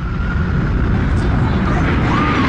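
A jet airliner flying low overhead in the open air, a loud steady rumble of engine roar that swells over the first half second.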